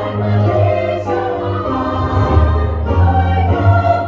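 Chorus singing held chords, accompanied by an electric keyboard, with the notes shifting every second or so.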